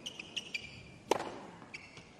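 A tennis ball struck hard by a racket about a second in, the loudest sound, with short squeaks of tennis shoes on the hard court just before it and again near the end.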